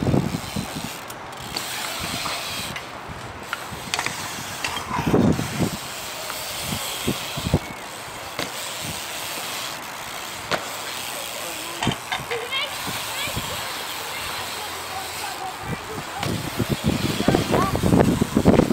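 A BMX bike riding a concrete skatepark bowl: tyres rolling over a steady rushing background, with scattered sharp knocks from landings and pedal or peg strikes. Voices are heard briefly now and then.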